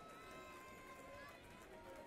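Near silence: faint background ambience with faint distant voices.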